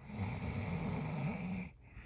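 A person making a rough, throaty sound effect with the voice instead of words, held for about a second and a half with a wavering pitch, then cutting off.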